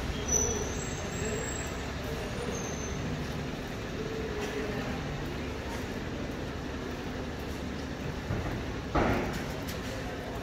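Town street ambience: a steady low rumble of distant traffic with faint voices, and a brief sharp thud about nine seconds in.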